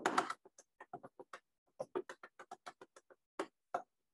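Chalk tapping on a blackboard as a series of dots is dabbed in: about twenty quick, irregular taps, with a short pause about a second and a half in.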